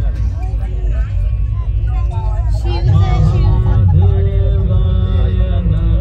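The light show's soundtrack over loudspeakers: a voice over a deep low rumble, then music with long held notes coming in about three seconds in.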